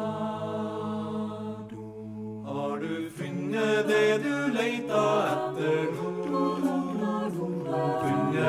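A cappella choir singing. It holds a sustained chord for the first two and a half seconds, then the voices break into a livelier passage with moving parts and crisp rhythmic accents.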